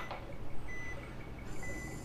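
Operating-room patient monitor beeping with the heartbeat: three short high beeps a little under a second apart, over a low steady room hum.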